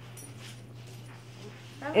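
A steady low hum in a quiet room, with a few faint rustles, until a voice begins near the end.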